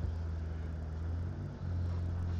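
A steady low hum of background room noise, with a brief dip about one and a half seconds in.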